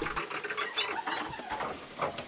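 Rapid clatter of synthesizer keys being played while the instrument itself is heard only through the player's headphones: a fast run of light plastic key clicks.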